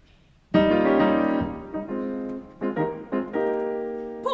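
Solo piano playing the introduction to a classical art song: a loud sustained chord about half a second in, then several more chords that ring and die away between attacks.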